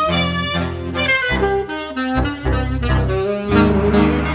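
Glory alto saxophone played through a phrase of quick, changing notes over a backing track with a low bass line.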